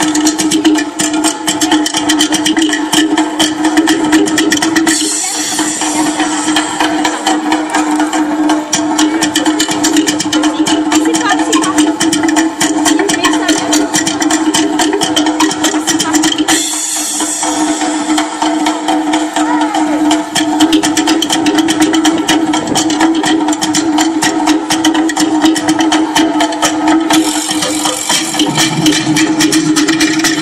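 Recorded Tahitian drum music for the dance, a very fast, dense beat of slit log drums over a steady low held tone, played through a sound system. The beat breaks briefly about five seconds in and again after about sixteen seconds.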